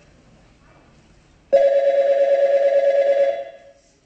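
Telephone ringing: one loud, fast-warbling electronic ring about two seconds long, starting about a second and a half in.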